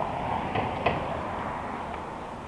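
Steady wind and road noise from a moving bicycle, with a few light clicks and rattles; the sharpest click comes a little under a second in.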